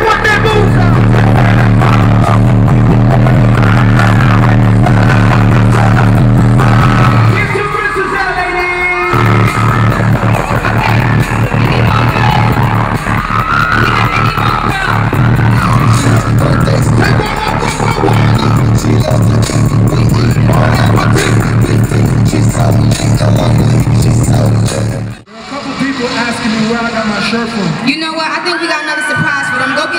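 Live hip-hop performance over a concert PA: a heavy bass-driven beat with a rapper's vocal on top. The beat drops out briefly about eight seconds in, and the music cuts off suddenly near the end, giving way to voices over crowd noise.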